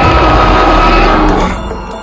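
A long roar sound effect for a toy Tyrannosaurus rex over background music, fading about a second and a half in.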